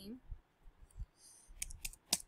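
Keystrokes on a computer keyboard: a few quick, faint clicks close together near the end.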